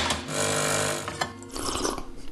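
De'Longhi PrimaDonna Elite bean-to-cup espresso machine running as it dispenses into a cup: a steady mechanical hum that eases off after about a second.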